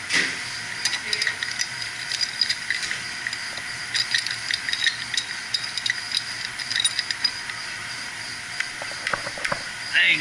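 Metal clicking and tapping as a pipe wrench is fitted to a valve's packing nut to tighten the packing, in scattered spells with a quick cluster near the end, over a steady hiss.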